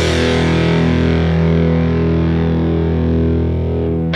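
Rock song: a distorted electric guitar chord held on its own without drums, ringing steadily while its brightness slowly fades.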